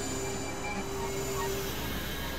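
Experimental synthesizer noise drone: a dense, hissing wash with short scattered tones and one held mid-pitched tone that cuts off shortly before the end.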